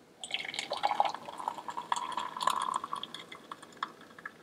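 Just-boiled water pouring from a Hamilton Beach glass electric kettle into a ceramic mug with a tea bag, a steady trickling fill that begins a moment in and thins out near the end.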